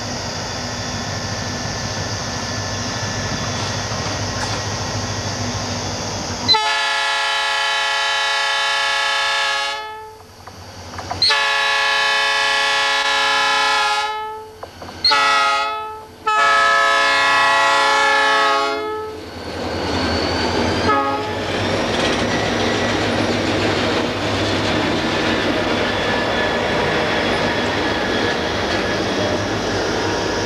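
Diesel freight train approaching a level crossing with a steady engine rumble, then its multi-tone horn blowing the crossing signal: two long blasts, a short one, and a long one. The train then rolls past close by, loud and rumbling.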